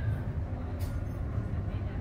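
Steady low rumble of store background noise, with a single faint click a little under a second in.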